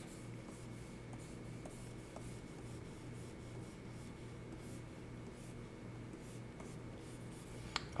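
Faint scratching of a stylus sketching strokes across a drawing tablet's surface, over a faint steady electrical hum, with a single small click near the end.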